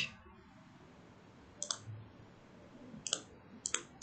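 Computer mouse clicking: three or four short, sharp single clicks about a second apart, the first under two seconds in, over a quiet room.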